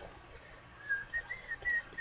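A person softly whistling a few short notes, the pitch stepping up and down, starting about a second in.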